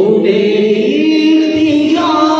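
A man singing an Urdu naat unaccompanied into a microphone, drawing out long melismatic notes; about a second in his voice glides up to a higher note and holds it.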